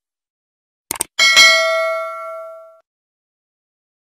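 Two quick mouse-click sound effects about a second in, then a single bell ding from a subscribe-button animation that rings out and fades over about a second and a half.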